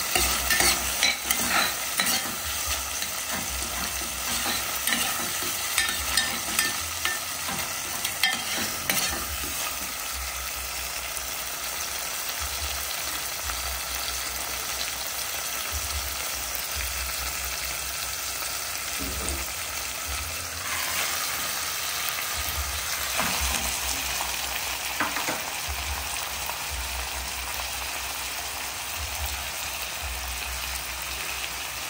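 Chopped onion and tomato sizzling as they sauté in oil in a stainless steel pot, with a utensil clicking and scraping against the pot over the first nine seconds or so of stirring. About twenty seconds in, a beef shank is laid in the pot and the frying goes on steadily.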